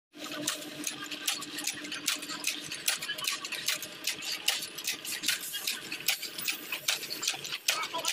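Mild-steel link chain making machine running, its forming mechanism clattering with rapid, irregular metallic clicks and clacks, several a second, as it bends iron wire into chain links.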